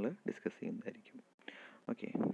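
Soft, breathy speech close to a whisper, with a brief gap in the sound about two-thirds of the way through and a soft breath-like hiss after it.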